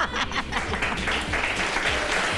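Applause: a few separate hand claps at first, then a steady, even wash of clapping about a second in.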